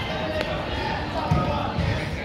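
Soccer ball thudding twice, about half a second apart, in the second half, heard in a large indoor hall with players' voices around it.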